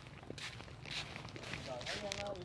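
Faint footsteps scuffing on paving stones. A distant voice comes in near the end.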